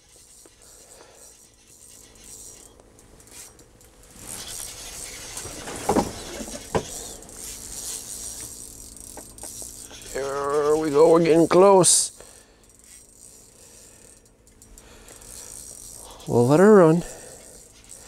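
Small ice-fishing reel worked by hand while a hooked walleye is fought up through the hole: faint rattling and clicking of reel and line, with a sharp knock about six seconds in. A man's drawn-out, wavering wordless exclamations, about ten and again about sixteen seconds in, are the loudest sounds.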